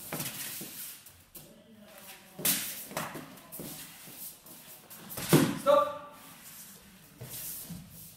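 Foam pool-noodle practice swords slapping together and against the sparrers in a quick exchange: a few sharp hits, the loudest about five seconds in.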